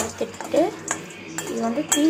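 A metal spoon stirs peanuts in a steel pan as they roast, scraping through the nuts and clinking sharply against the pan every half second or so.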